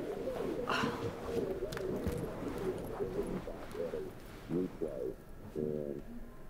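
A bird calling, a few short low calls in the second half.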